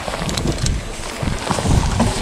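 Wind buffeting the microphone and a jacket rustling against the camera, an uneven low rumble with a couple of light knocks.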